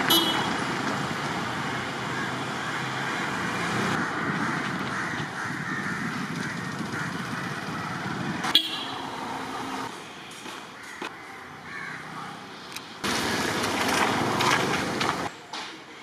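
Road traffic ambience: vehicles such as a truck and a scooter passing on a road give a steady rush of engine and tyre noise. A short sharp sound comes about eight and a half seconds in. The traffic noise drops to quieter street ambience, then swells again for a couple of seconds near the end.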